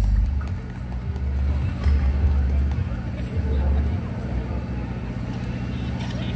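Live band on an outdoor PA thinned down to mostly low bass: deep bass notes pulsing about every second and a half over a steady low hum, with the higher instruments dropped out until fuller music comes back in just after.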